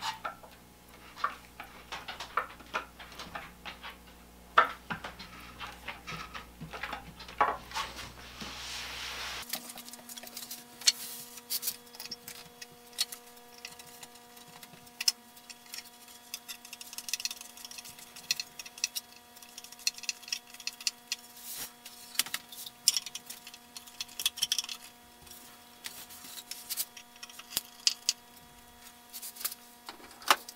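Hand screwdriver driving wood screws through a quilt rack's wooden end upright into a closet rod: irregular small clicks, ticks and rubbing scrapes from the screwdriver and the wood. The low background hum changes abruptly about nine seconds in.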